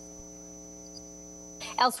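Steady electrical mains hum, a low buzz with a stack of even overtones. A voice starts speaking near the end.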